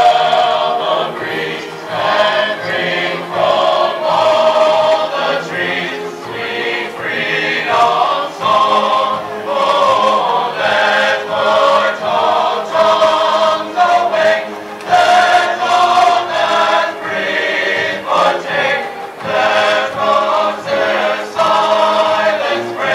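Marching band playing a slow passage of long held chords in phrases of a second or two.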